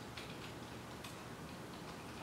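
Quiet room tone with faint ticking.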